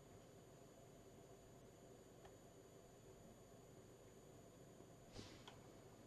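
Near silence: room tone, with a couple of faint clicks, the second about five seconds in.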